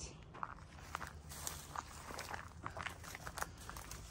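Footsteps of someone walking over rough, debris-strewn ground, with irregular crunches and crackles as they push through dry brush.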